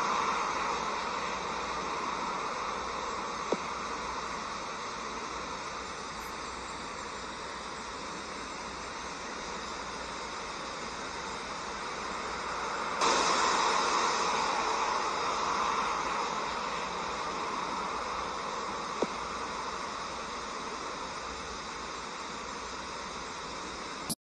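A steady rushing hiss of outdoor ambience on a camcorder's soundtrack, like wind and water, that turns suddenly louder and brighter about halfway through. Two faint clicks stand out, one early and one later.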